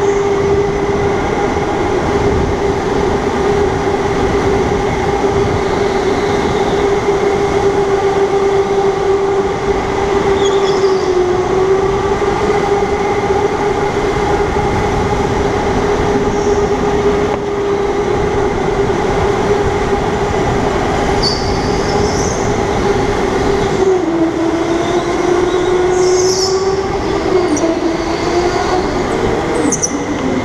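Electric go-kart motor whining at a steady pitch over loud tyre rumble on a concrete floor, the pitch dipping briefly as the kart slows into corners. Short high tyre squeals come several times in the last third.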